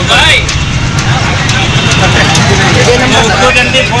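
Voices talking, which the recogniser did not write down, over a steady low rumble of outdoor background noise.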